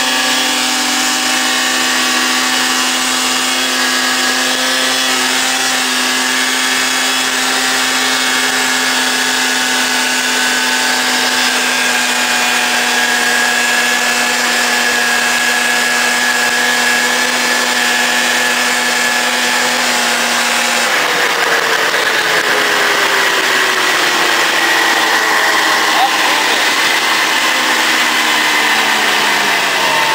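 Fan-cooled two-stroke engine of a 1983 Yamaha SRV 540 snowmobile running at speed under way, its pitch creeping slowly upward. About two-thirds of the way through the throttle comes off, and the engine note falls slowly.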